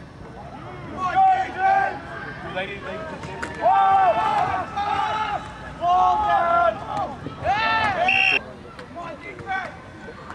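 Several people shouting and yelling during a football play, their calls overlapping in bursts. The shouting is loudest about four seconds in and again just before eight seconds, then dies down.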